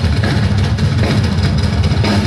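Heavy metal band playing loud live: a drum kit and distorted electric guitars over a heavy, rumbling bass.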